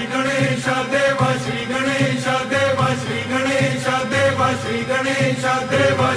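Devotional chanting set to music: a short sung phrase repeats over and over above a steady low drone, with the bass note shifting a couple of times.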